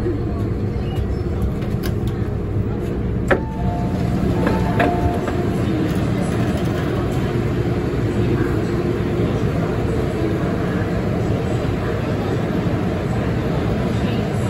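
MTR M-train standing at a station platform: a steady hum, then a sharp clunk about three seconds in as the doors open, followed by a couple of short tones, and after that the noise of the busy platform with people's voices.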